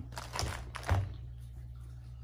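Two dull thunks about half a second apart, the second the louder, over a steady low hum.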